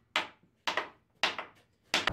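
Small hammer striking a folded piece of steel wire mesh laid on a board, pounding its edge flat: four blows about half a second apart.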